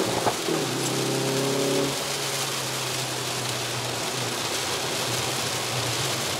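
In-cabin sound of a Hyundai Veloster N's turbocharged four-cylinder engine holding a steady tone, louder for the first couple of seconds and then quieter. Over it runs a constant rush of rain and tyre spray on the wet track.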